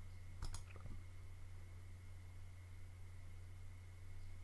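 Two quick computer-mouse clicks about half a second in, over a faint steady low hum.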